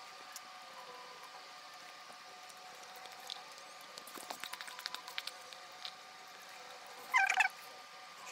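Quiet eating of spicy instant noodles with wooden chopsticks: a cluster of small clicks and mouth smacks in the middle, then a short high-pitched squeak near the end, over a faint steady hum.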